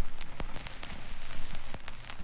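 Steady rain-like hiss with scattered sharp clicks and crackles, over a faint low hum.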